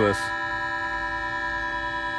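Omnichord OM-84 sounding a held electronic chord, several steady organ-like tones at a constant level, while its tuning trimmer is being adjusted with a screwdriver. The metal screwdriver near the circuit board itself has an effect on the sound.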